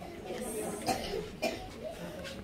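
Low talking among people in the room, with two short sharp noises about a second in and again half a second later.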